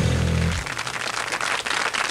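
A live band's closing chord rings and is cut off about half a second in, and audience applause follows.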